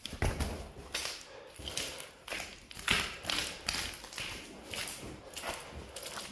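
Footsteps on loose stone rubble and grit, irregular steps about two a second.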